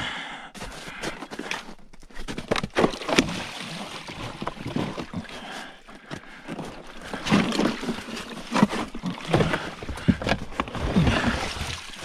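Plastic garbage can being tipped over and handled, with irregular hollow knocks and scrapes against snow and debris; it seems to hold ice.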